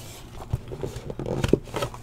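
Cardboard trading-card hobby box being handled and opened by hand: light scrapes and taps of cardboard, with soft knocks about half a second and a second and a half in.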